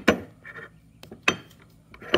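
Steel portal-box gears and a splined shaft clinking against each other as the shaft is set into the driven gear: a few short metallic clinks, the loudest just after the start and another a little past a second in.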